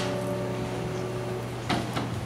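Grand piano's final chord ringing out and fading away, over a steady low hum; a single knock comes near the end.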